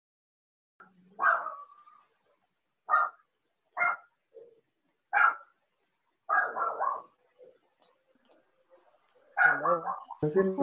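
A dog barking: a series of short single barks about a second apart, heard over a video call, followed by a voice near the end.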